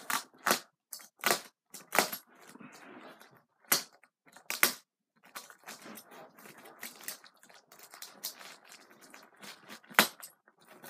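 Cardboard packing being crushed and torn by hand: five sharp crunches in the first five seconds, then softer rustling and crackling.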